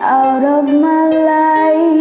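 A solo voice singing long held notes of a slow ballad over a soft karaoke backing track; the note steps up about half a second in and is then held.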